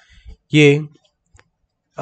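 A man says a single short word during a pause in his talk, with a few faint clicks before it and one sharp little click about a second later.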